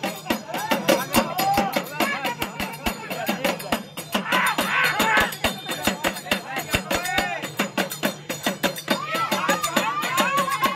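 Fast, steady drumming on small two-headed hand drums (dakla), with voices singing along over the beat.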